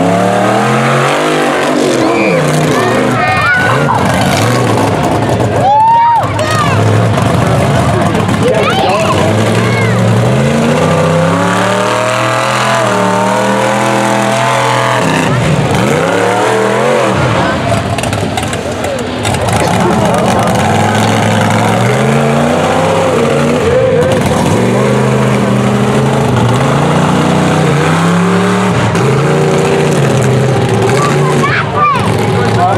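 Freestyle mud truck's engine revving hard, its pitch climbing and dropping over and over as the throttle is worked, with short lifts off the throttle between runs.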